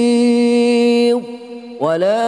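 A man's voice reciting the Quran in melodic tajwid style, holding one long steady note on a prolonged vowel. The note ends with a falling glide a little past a second in. After a brief breath pause, the voice comes back in on a rising pitch near the end.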